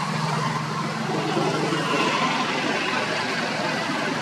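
A motor vehicle's engine running over steady outdoor background noise, its low hum fading out about a second and a half in.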